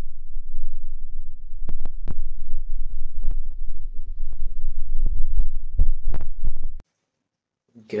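Low rumbling and thumping from a handheld phone being moved close to its microphone, with scattered sharp clicks; it cuts off abruptly near the end.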